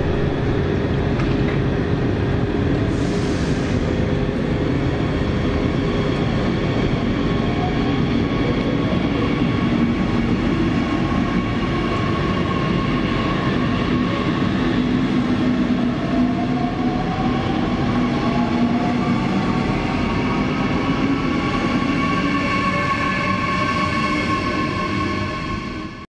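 FEX Airport Express double-deck electric train pulling out of an underground station platform. Its rolling noise is steady, and an electric drive whine rises in pitch as it speeds up; the sound fades out near the end.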